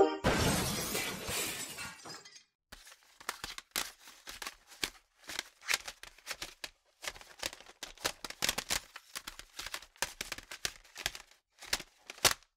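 A loud hit at the start that fades away over about two seconds. Then plastic CD jewel cases are rummaged through, clacking and rattling against one another in quick irregular clicks.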